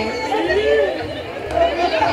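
Several people talking at once in a crowd: overlapping voices and chatter.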